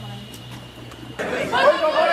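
Low hum and room murmur, then from about a second in a man speaking loudly over a chamber microphone.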